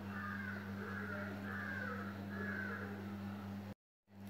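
A faint run of four or five bird calls over a steady low hum; the audio cuts out abruptly shortly before the end.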